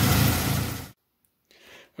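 1980 Saab 900 Turbo's turbocharged four-cylinder engine idling steadily as it warms up, cutting off suddenly about a second in, followed by near silence.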